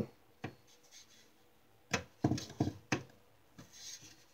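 Plastic clicks and knocks as a hand handles the loose strobe unit of a Simplex fire-alarm appliance: a single click about half a second in, another near two seconds, then a quick run of about four clicks, and a soft rub near the end.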